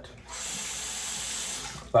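Tap water running into a bathroom sink with a steady rush, starting a moment in and shutting off just before the end.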